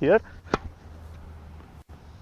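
A single sharp tennis-ball impact about half a second in, over a low steady outdoor background rumble.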